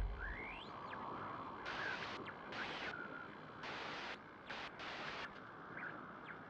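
Tail of a logo intro sound effect: a deep rumble fading away in the first half-second, then a run of hissing swells that start and stop abruptly, with a few thin whistling glides, one rising near the start.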